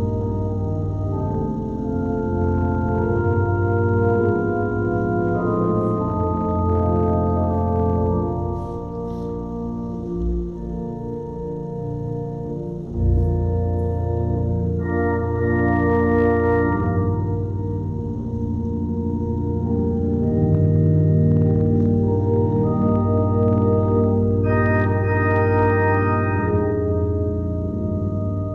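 Organ playing slow, sustained chords with held notes that change every second or two, and a deep bass note coming in about halfway through.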